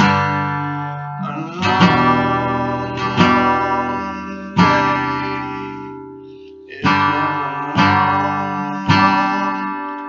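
Acoustic guitar played slowly: single strummed chords, each left to ring out and fade, about one every second or so, with one longer held chord in the middle.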